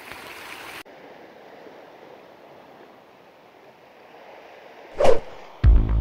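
Faint, steady wash of the sea against rocks, which drops to a quieter hiss after an abrupt cut. About five seconds in there is a short loud sound. Just before the end, background music with a heavy, deep beat begins.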